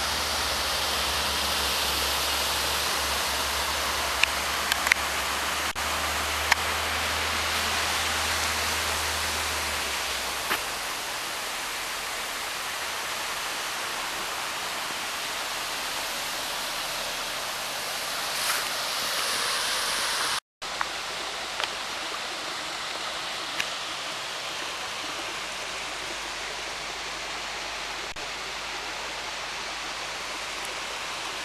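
Small waterfall spilling over a rock ledge into a shallow pool: a steady rush of falling water, a little softer in the second half. It cuts out for a split second about two-thirds through.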